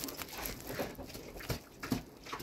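Faint sounds from a heavily pregnant sow moving in her pen, with two short, soft sounds in the second half.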